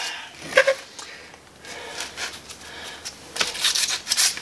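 Sandpaper rubbing on the wooden spokes of a Model T wheel in a few quick strokes near the end, after a mostly quiet pause. A brief pitched sound comes about half a second in.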